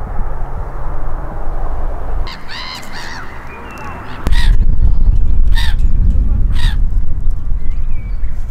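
Harsh bird calls: a pair about two to three seconds in, then three calls evenly spaced about a second apart. From about four seconds in, loud wind buffets the microphone.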